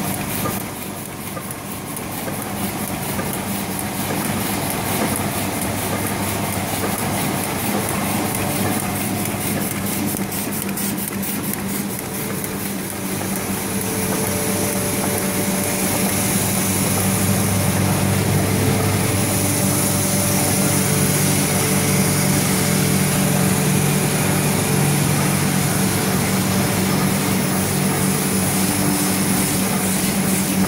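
Heidelberg SM 74 two-colour sheetfed offset press running: a steady machine hum with a fast, even ticking through the first dozen seconds, growing a little louder later on.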